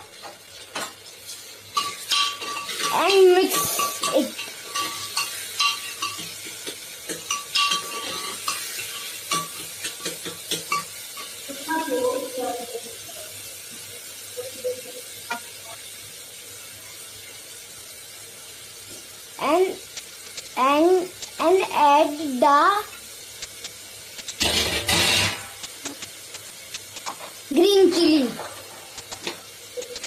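A spoon stirring and clinking against a steel cooking pot on a gas stove, with food sizzling in the pot. About 25 seconds in there is a loud rush of noise lasting about a second.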